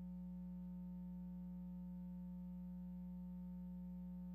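Steady low electrical hum with a faint buzz of higher overtones, unchanging in pitch and level.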